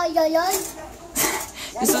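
Mostly speech: a small child's high-pitched voice in the first part, a brief noisy rush a little past the middle, then an adult starts talking near the end.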